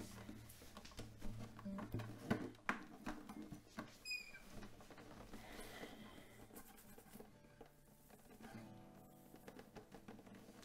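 Classical guitar falling quiet: low notes die away over the first few seconds among soft clicks and taps, with a brief high chirp about four seconds in. After that there is only faint rustling as hands move over the head and hair.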